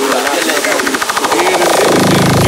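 Fast electronic hardcore dance music in a build-up: the bass and kick drop out, leaving a rapid drum roll that speeds up under a chopped vocal, and a rising synth swells in near the end.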